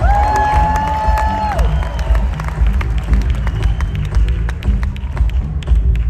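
A live rock band playing, with heavy bass guitar and drums, while the crowd cheers and claps. A single high note is held for about a second and a half near the start, then slides down.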